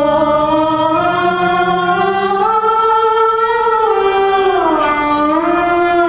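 Arabic dance music with a female voice singing one long, wavering line that climbs slowly for about three seconds, then falls and settles lower near the end.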